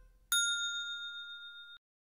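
A single bright bell-like ding, a logo sound effect, strikes about a third of a second in and rings, fading, before cutting off abruptly near the end.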